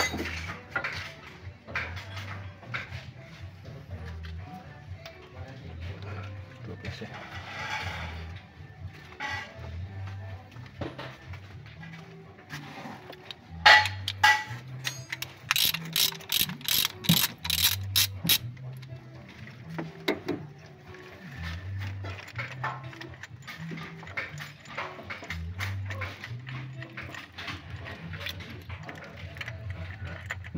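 Background music throughout. About halfway through, a run of sharp metal clicks, about three a second for some five seconds, from a socket ratchet wrench working the bolts on the timing gear housing of an Isuzu Panther engine.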